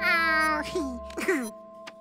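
A cartoon monkey's high-pitched vocal call, falling slightly over about half a second, then a few shorter chattering sounds, over held background music notes.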